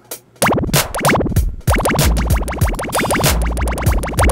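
Electronic drum beat from Reason's drum sequencer playing through a Kong drum module, starting about half a second in: low kick hits with rapid, repeated sweeps falling in pitch layered over them. The pattern switches partway through as the pattern-select knob is turned.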